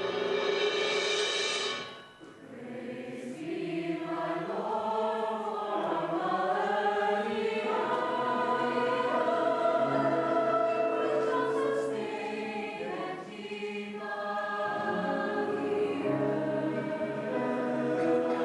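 Mixed choir singing. A loud full chord ends about two seconds in, and after a brief dip the voices come back in with moving lines that carry on steadily.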